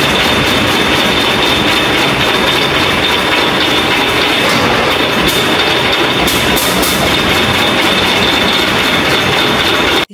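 Old belt-driven peanut-grinding machine running loudly and steadily, a constant high-pitched whine over its mechanical clatter.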